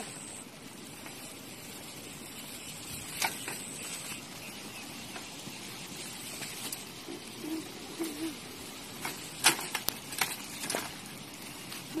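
Steady outdoor hiss with scattered sharp clicks and rattles, most of them near the end, from a child's bicycle being lifted and wheeled; a faint voice partway through.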